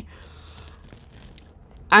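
Faint rustling of a plastic denture adhesive tube being handled, with a few light ticks. A woman's voice starts speaking near the end.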